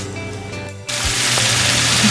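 Soft background music, then an abrupt cut about a second in to a loud, steady sizzle: diced raw chicken frying in hot olive oil in a nonstick pan.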